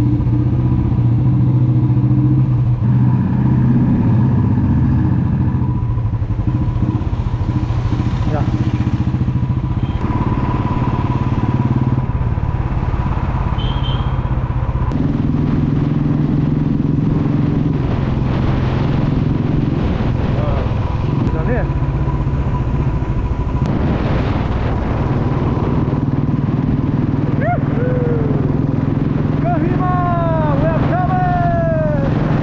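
Motorcycle engine running while riding along the road, its note shifting in steps several times.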